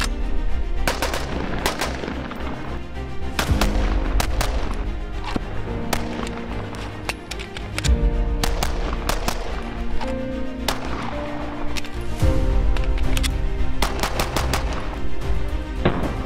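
Repeated gunshots from a rifle and a pistol, single shots and quick strings, laid over loud background music with held notes.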